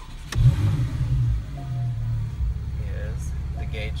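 Porsche 911 50th Anniversary Edition's 3.8-litre flat-six being started, heard from inside the cabin: a click, then the engine catches and flares up loudly. After about two seconds it settles into a steady idle.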